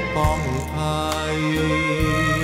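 Thai song: the singer finishes a line on the held word 'ภัย' over a backing band with held low bass notes and a light steady beat, as an instrumental break begins.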